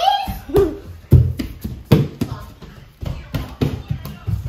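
Footsteps of children running on a hardwood floor: a quick, uneven run of thuds that come closer together in the second half.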